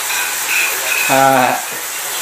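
Steady hiss of rain in the music video's spoken intro skit, with one short held voice a little after a second in.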